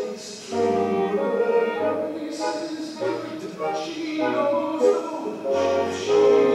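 Live theatre pit orchestra playing, with a voice singing over it.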